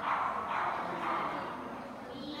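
A dog barking.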